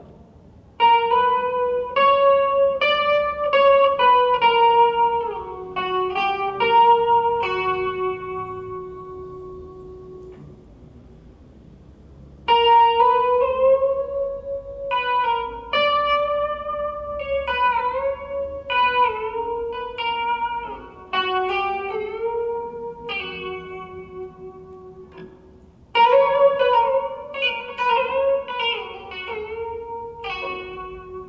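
Electric guitar playing single-note legato phrases in quarter tones, sliding the pitch between notes by small steps. Near the middle a held note rings and dies away before the next phrase starts.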